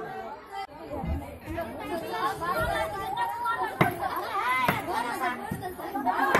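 Crowd chatter: many women's and girls' voices talking over one another, with a sharp click about four seconds in.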